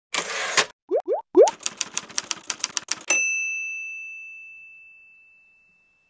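Logo sound-effect sequence: a short whoosh, three quick rising pitch sweeps, then a rapid run of clacks at about six a second. It ends on a single bright bell ding about three seconds in, which rings on and fades out over about two seconds.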